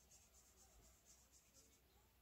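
Near silence, with faint scratching of pens on paper as the new pens are tried out.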